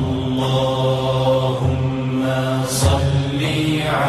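Arabic salawat, the blessing on the Prophet Muhammad, chanted slowly by a solo voice. It is sung as long, drawn-out melismatic notes over a steady low hum.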